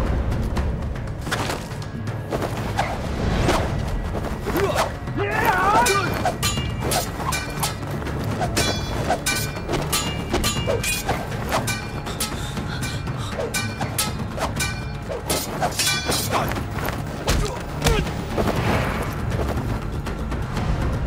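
Action-film fight sound effects: a dense, steady run of hits, thuds and booms over a music score, with a few shouts.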